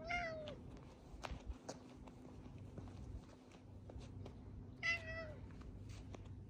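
Domestic cat meowing twice: two short meows about five seconds apart, each falling slightly in pitch at the end.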